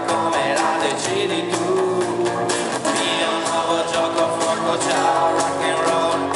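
Live acoustic band music: strummed acoustic guitars over a drum kit keeping a steady beat, with a sung vocal line.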